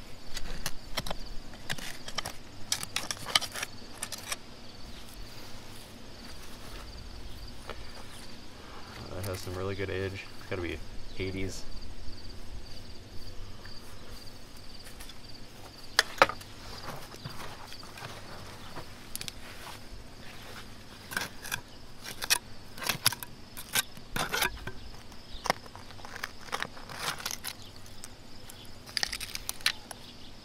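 Steel hand trowel digging and scraping in dry, stony soil, with sharp clicks and scrapes as it strikes stones and glass. A steady high insect trill runs underneath, and a short voice-like murmur comes about nine seconds in.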